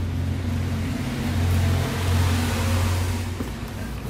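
A steady low hum, like a machine or engine running, with a rush of rustling noise that swells through the middle and fades near the end, as the plastic digital instrument cluster is turned over in the hands.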